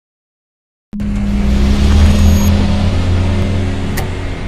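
Cinematic logo-intro sound effect: a loud rumbling swell with a low steady hum that starts suddenly about a second in, peaks shortly after and eases slightly.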